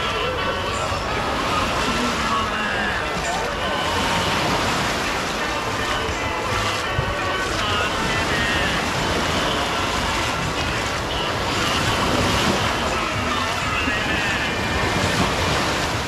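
Steady wash of sea surf breaking on a beach, with faint distant voices underneath.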